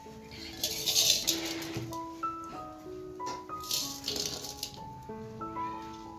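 Pakoras deep-frying in a kadai of hot oil: two bursts of sizzling as a wire skimmer stirs and lifts them, the first about a second in and the louder, the second about four seconds in. Piano background music plays throughout.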